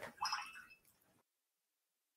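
A brief, faint sound in the first half-second, then near silence.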